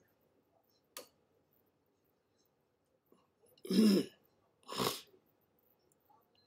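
A man clearing his throat in two short bursts, about four and five seconds in. The first burst is the louder. A single faint click comes about a second in.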